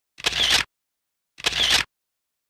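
A short, noisy sound effect repeated about once a second, each burst lasting about half a second, with dead silence between the repeats.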